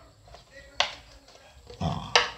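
A single sharp click about a second in, a round checker piece snapped onto a whiteboard as a move is shown; a man's voice starts near the end.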